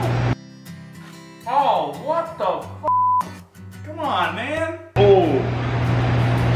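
A short, steady censor bleep a little under three seconds in, set between a person's shouted exclamations over background music.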